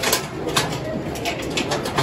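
Crowd murmur in a large hall, with an irregular run of sharp clicks and rustles close by, about a dozen in two seconds.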